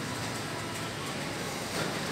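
Steady supermarket room noise: an even hum and hiss from ventilation and the refrigerated display counters.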